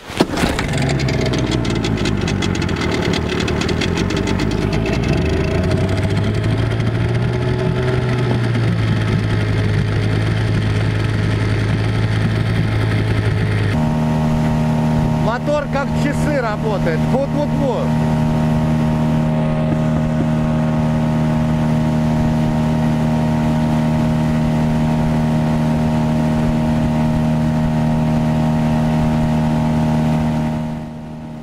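A 15-horsepower outboard motor catches just after being started on choke and runs unevenly at low revs, its pitch wandering up and down. About fourteen seconds in it becomes a steady, higher drone: the motor is pushing the boat along under way.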